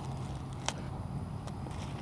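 Wax seal being peeled off tissue paper by hand: faint paper handling with one small sharp click about two-thirds of a second in, over a steady low background rumble.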